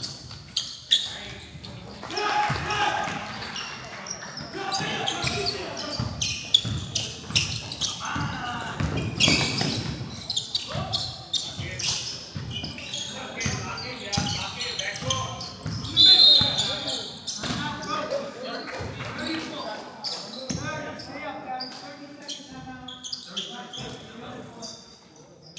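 A basketball bouncing and being dribbled on a hardwood gym floor, among voices in a large gym. About sixteen seconds in, a short, loud, high-pitched referee's whistle stops play.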